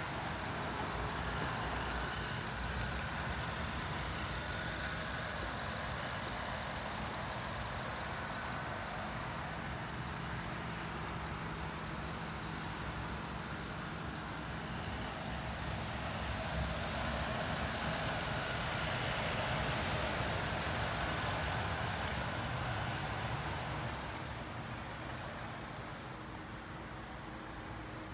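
Suzuki SX4 S-Cross hybrid's 1.4-litre turbo petrol engine idling steadily, mixed with open-air background noise; the sound eases somewhat near the end.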